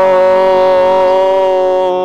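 A man singing a gospel song, holding one long steady note that stops near the end.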